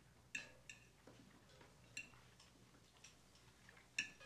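A few faint, irregular clinks of a metal fork against a plate, each with a short ring.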